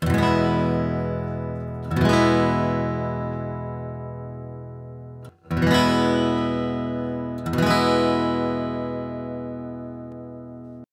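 Acoustic guitar strumming four chords, each left to ring and fade: one at the start, then about two, five and a half and seven and a half seconds in. This is the recording made with no preamp at all, the dry reference take for a preamp comparison.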